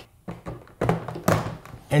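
Hard plastic knocks and clicks from the lid of a 12 V thermoelectric cooler being set onto its body and its latches handled: a few short thunks about a second in.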